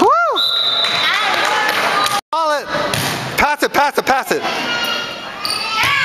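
Indoor volleyball play in a gym: the ball thudding as it is hit and lands, with voices and a quick run of short rising-and-falling squeaks or calls. A brief total dropout about two seconds in.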